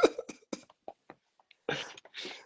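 A man's laughter trailing off in short breathy bursts, with a few faint clicks, and a breathy exhale near the end.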